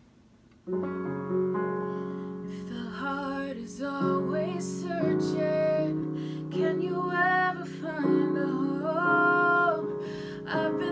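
Yamaha digital piano playing sustained chords, coming in a little under a second in, with a woman's singing voice joining the piano about two and a half seconds in.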